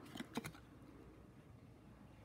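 Hockey trading cards being flicked through by hand: two faint, short clicks of card edges within the first half second, then only a soft room hush.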